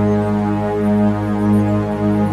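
Meditation music drone tuned to G-sharp at 207.36 Hz: a low, steady chord of held tones with a deep hum an octave below, swelling gently in loudness.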